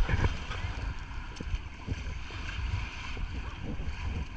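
Wind buffeting the microphone, an uneven low rumble, over small waves washing onto the sand.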